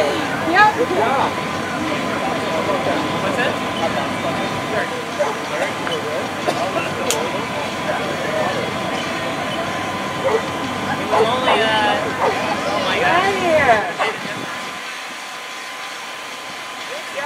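Indistinct voices of spectators chatting, over a steady mechanical hum with a thin steady tone. The voices pick up about eleven to thirteen seconds in, and the low part of the hum drops away shortly after.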